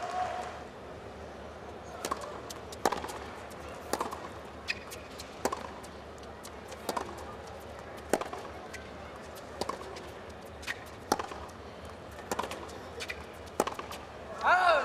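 Tennis rally: the ball struck back and forth by rackets and bouncing on the court, a sharp hit every second or so over a steady background hum.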